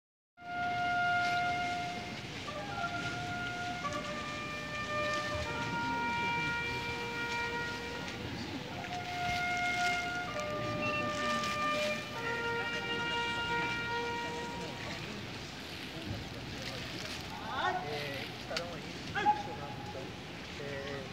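A lone trumpet plays a slow melody of long held notes, one at a time, over the steady murmur of a large stadium crowd. The melody ends about fifteen seconds in, and a few short voice-like sounds follow near the end.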